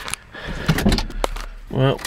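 Car engine idling low, with a run of short clicks and light knocks from inside the cabin.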